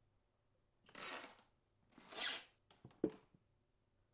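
Two short, soft rustling swishes about a second apart, then a light click near the end.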